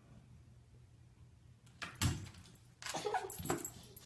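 A pet animal on a hardwood floor: a couple of sharp thumps about two seconds in, then short whining calls for about a second near the end.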